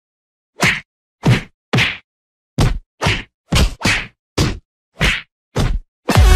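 A series of about ten sharp whacks, spaced irregularly about half a second apart, each one short and followed by dead silence.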